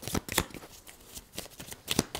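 A deck of tarot cards being shuffled by hand: an irregular run of short card clicks and slaps, the sharpest one near the end.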